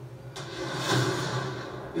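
A car engine revving in a film trailer's sound mix: a sudden rush of engine noise about a third of a second in swells and then eases off over a steady low hum.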